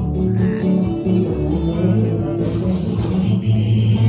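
Bachata music with plucked guitar over a prominent bass line, played loud through a DJ's sound system.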